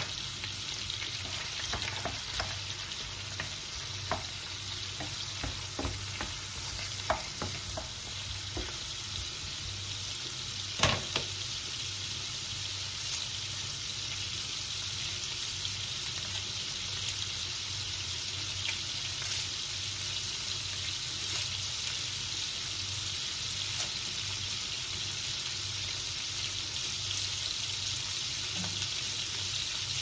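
Cubed red meat sizzling in oil in a frying pan, a steady hiss over a low hum. A few light clicks and knocks come in the first ten seconds, the sharpest about eleven seconds in.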